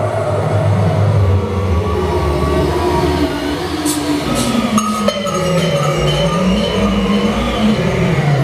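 Live electronic noise music: a loud, dense low drone with wavering, sliding tones above it and a few sharp clicks about four and five seconds in.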